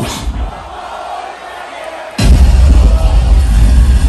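Live DJ juggling over a large outdoor sound system: the track cuts out just after the start, leaving about two seconds of quieter crowd noise, then the next tune drops in suddenly and loud with heavy bass.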